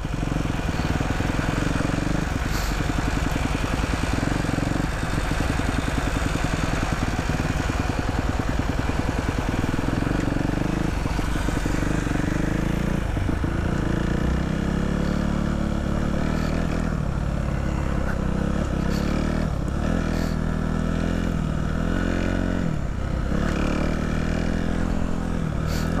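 Dirt bike engine running under way at a steady pace. In the last ten seconds its note dips and climbs again several times.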